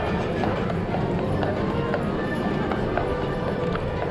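Horse hooves clip-clopping on the street as a horse-drawn trolley moves off, mixed with music playing in the background.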